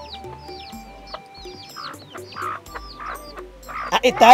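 Chickens clucking, with many short high chirps repeated through the moment, over soft background music with steady held tones.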